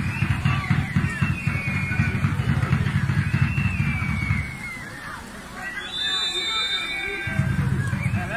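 Wind rumbling on the phone microphone, with scattered shouts from players on the pitch. About six seconds in there is a short, high referee's whistle, signalling the penalty kick.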